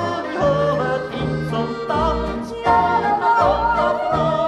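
Swiss folk polka band playing: accordion and a yodeling voice carry the melody over an oom-pah bass that alternates low notes about twice a second.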